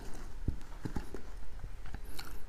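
Close-miked mouth sounds of a man eating: wet chewing and lip-smacking clicks, about six irregular soft clicks in two seconds.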